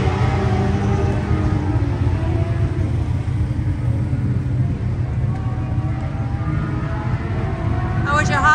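A steady engine rumble, a low drone with a held pitch and no rise or fall.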